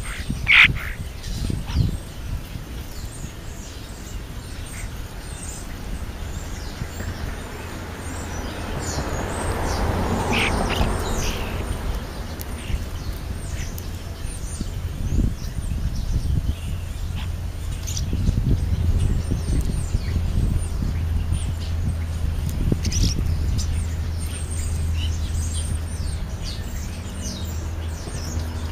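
European starlings calling while they feed: many short chirps and clicks scattered throughout, with one louder call about half a second in. A steady low rumble runs underneath, louder in the second half.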